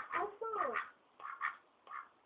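Indian Runner drake giving faint short quacks, three in the second half, each under half a second.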